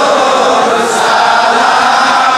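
A large crowd of men chanting together in devotional unison, loud and steady without a break.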